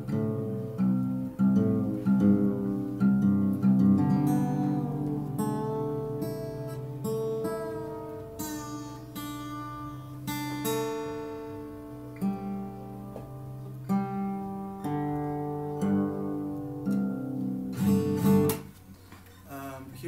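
Acoustic guitar played solo, chords plucked and strummed and left to ring, changing every second or two; the playing stops about a second and a half before the end.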